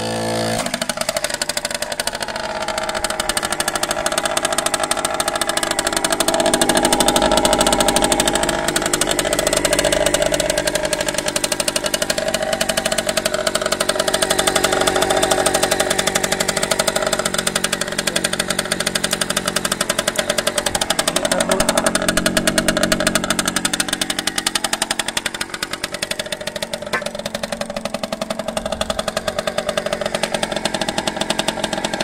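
Small air-cooled Minarelli two-stroke engine of a Macal Junior minibike running close by, its revs rising and falling, loudest between about six and sixteen seconds in.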